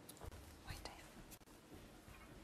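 Near silence, with faint low voices.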